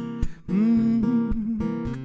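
Steel-string acoustic guitar strummed in a worship song, with a man's voice sliding up into one long held note over it from about half a second in.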